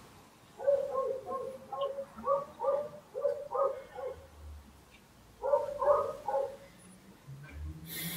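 A dog barking, a run of short, evenly pitched barks lasting about four seconds, then after a pause a second, shorter run.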